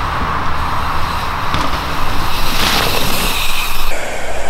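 Steady noisy rush of a mountain bike being ridden fast down a dirt trail: tyres rolling over loose dirt and leaves, with wind noise on the microphone.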